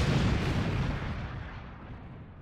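The fading tail of a loud boom, an explosion-like impact hit that struck just before, dying away as a rumble over about two seconds.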